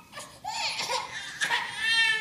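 An infant crying out in a few short, high-pitched wails.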